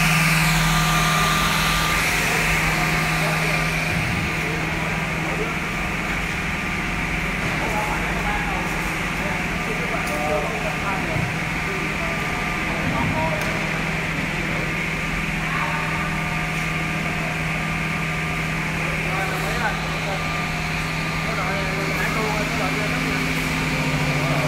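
S8 S468JP automatic edge banding machine running: a steady motor hum with an even hiss over it.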